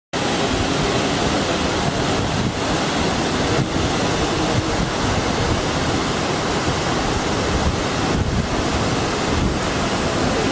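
Steady, continuous rushing roar of Dunhinda Falls, a large waterfall plunging into a forested gorge.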